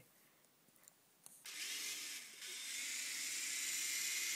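Execuheli Propel toy coaxial RC helicopter's small electric motors and twin rotors spinning up about a second and a half in, a steady high whir, briefly dipping then holding as the throttle is applied with the helicopter held in the hand.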